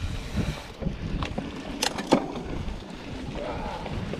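Wind buffeting a handlebar-mounted action camera, with the rumble and rattle of a mountain bike rolling fast down a rooty dirt singletrack. A few sharp knocks come over bumps, the loudest about two seconds in.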